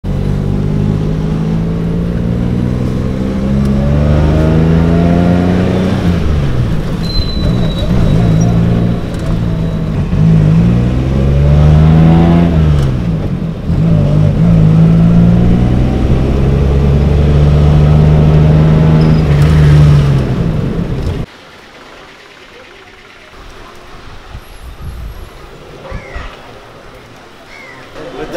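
Car engine heard from inside the cabin, its pitch climbing as it accelerates and dropping back at each gear change, then holding steady at cruising speed. The engine sound cuts off suddenly about three-quarters of the way through, leaving only faint background noise.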